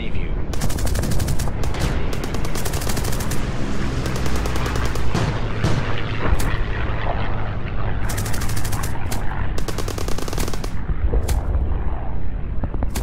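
Battle sound effects: repeated bursts of rapid automatic gunfire, each about a second long, over a steady low rumble, with a few single shots near the end.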